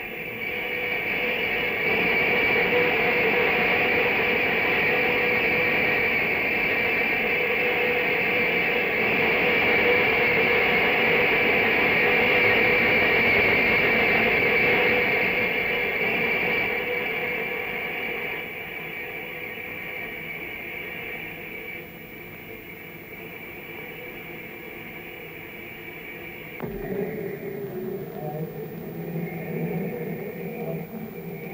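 A loud steady rushing noise with a hum running through it, heard as the submarine K XVIII dives. It swells over the first half, fades, and gives way abruptly to a quieter, different sound near the end.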